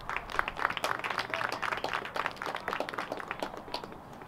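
A small crowd of spectators clapping, starting abruptly and dying away near the end.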